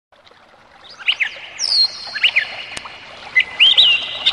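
Birds chirping: short sweeping calls that begin about a second in and come every half second or so, some drawn out into held high notes, over a faint hiss.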